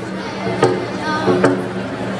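Frame hand drum struck with a beater in a slow, even beat, about one stroke every 0.8 seconds, during a pause in the singing.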